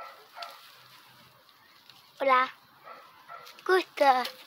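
Two short high-pitched cries, one about two seconds in and a shorter one near the end, over a faint outdoor background.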